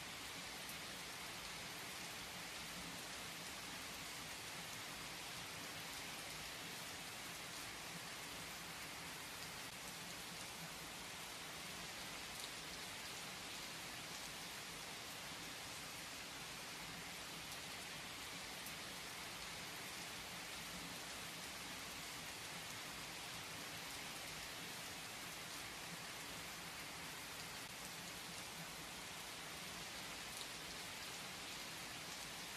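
Steady rain falling: an even, soft hiss that does not change.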